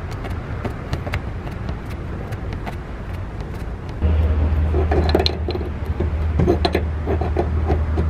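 Small clicks and taps of brass gas-line fittings being handled and threaded together by hand. About four seconds in, a steady low hum joins them and becomes the loudest sound.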